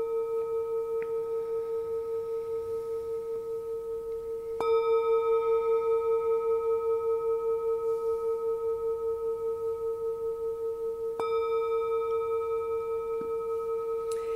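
Small metal singing bowl rung with a striker to open a meditation: a steady, gently wavering ring of several pitches. It is struck again about four and a half seconds in and again about eleven seconds in, each strike renewing the ring.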